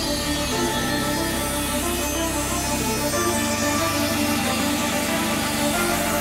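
Background music with sustained notes over a bass line that changes note a few times.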